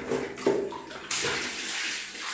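Water running and splashing, surging about half a second in and again just after a second.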